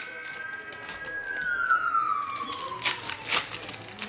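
Trading cards and foil pack wrappers handled by hand, with crinkling and a cluster of sharp crackles about three seconds in. Under it, a single long siren-like tone rises slightly, holds, then glides slowly downward.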